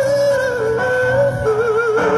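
Live singing in an acoustic cover: a high voice holds long notes with a wide, even vibrato, stepping down in pitch about halfway through, over a quieter steady accompaniment.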